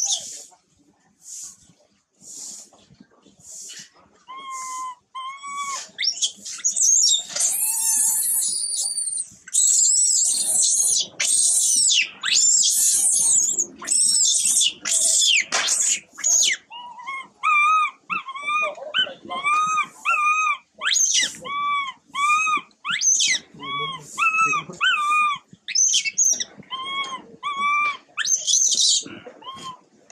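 Baby long-tailed macaque crying in distress: soft squeaks at first, then a run of loud, shrill screams, then a long string of short, arched whimpering calls about two a second.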